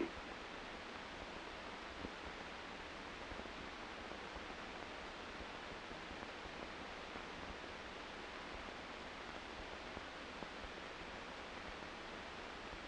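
Steady, even hiss with no distinct events: the background noise of an old film soundtrack between narration.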